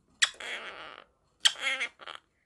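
Blue Quaker parrot giving two short calls about a second apart, each starting with a sharp click.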